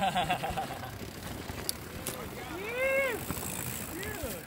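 Mountain bike and off-road handcycle tyres rolling over rock and gravel down a trail, with a couple of sharp clicks about halfway through. Near the end there is one short whoop that rises and falls in pitch.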